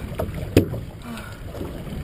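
Steady low rumble of wind and water on a small open fishing boat at sea, with one sharp knock about half a second in.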